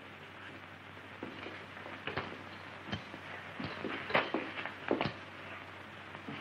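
A few light footsteps and small knocks on a wooden floor, irregularly spaced, over the steady hiss of an old film soundtrack.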